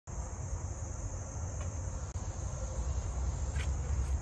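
Steady high-pitched chirring of insects over a constant low rumble, with a couple of faint clicks.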